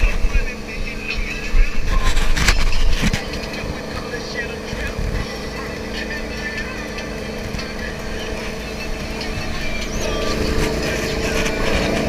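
A Supra SG400 wake boat's inboard engine running steadily under load, heard over the rush of its churning wake and wind buffeting a chest-mounted GoPro's microphone, with a louder gust or splash about two seconds in.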